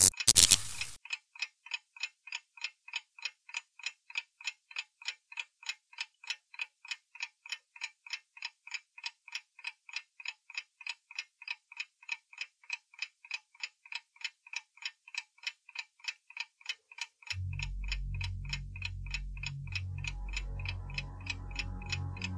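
A clock ticking steadily, about three ticks a second, after a short loud burst at the very start. From about seventeen seconds in, a low, deep sound joins under the ticks.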